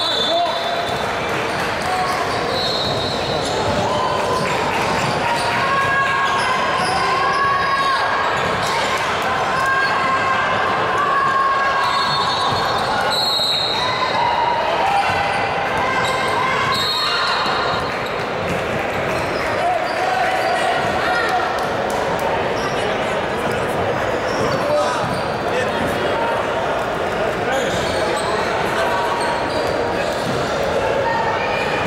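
Basketball game in a large, echoing gym: the ball bouncing on the hardwood floor over players' shouts and calls. A few short shrill tones cut through now and then.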